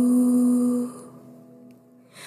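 A singer holds a long note on the last syllable of "ibu" over soft music. The note fades out about a second in, leaving only faint accompaniment.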